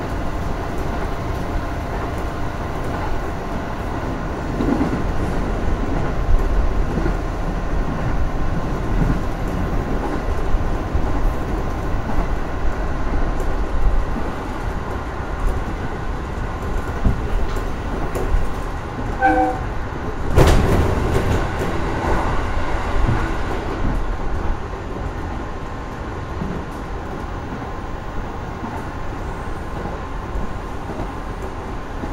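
JR East 415-series electric train heard from inside its front car while running along the line: a steady low rumble of wheels and running gear with a few steady tones from the motors. About two-thirds through, a short pitched tone, then a sudden louder rush for a few seconds as the train passes through a tunnel.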